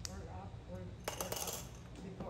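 Hard mahjong tiles clacking against each other and the table: one click at the start, then a quick cluster of clicks about a second in.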